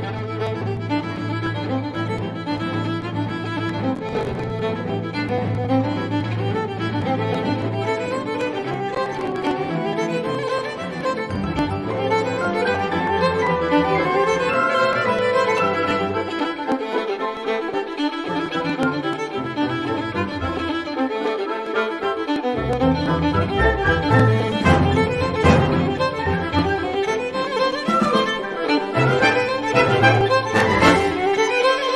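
Recorded music led by a violin over low sustained string notes. The low notes drop out for a few seconds past the middle, then return as the music grows louder near the end.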